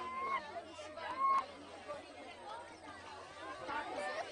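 Zoo visitors talking, several voices chattering over one another.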